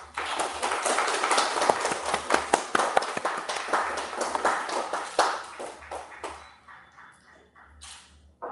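Applause from a small group of people clapping, starting suddenly and dying away over the last two seconds or so.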